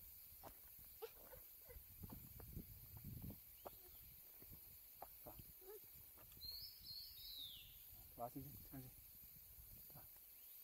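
Near-quiet forest ambience with scattered faint knocks and rustles, a short high call gliding downward about two-thirds of the way through, and a voice near the end.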